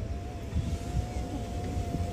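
Low, steady rumble of a truck's running engine picked up through an open side window, with a faint thin whine held at one pitch above it.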